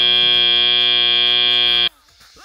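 FIRST Robotics Competition field's end-of-match buzzer: one loud, steady, high buzzing tone that cuts off suddenly near the end, signalling that match time has run out.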